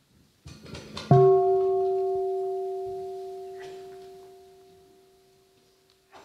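A bowl-shaped meditation bell struck once, about a second in. A low tone and a higher overtone fade away slowly over about five seconds. Faint handling sounds come just before the strike.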